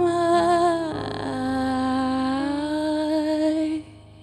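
A woman's voice singing long wordless notes with vibrato over sustained digital piano chords; a second held note comes in about a second and a half in. The voice stops just before the end, leaving the keyboard chord ringing faintly.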